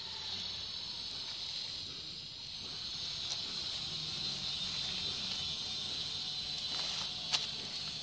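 Insects chirring in a steady high-pitched drone, with one sharp click near the end.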